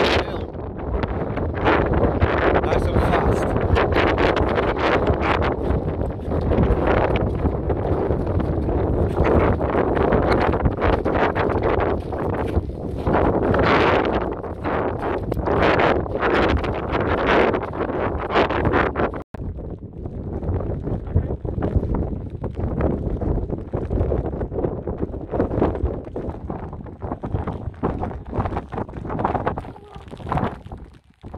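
Gusty wind buffeting the microphone on an exposed hilltop, with a man's laugh at the start. The noise cuts out for an instant about two-thirds of the way through and is a little quieter after.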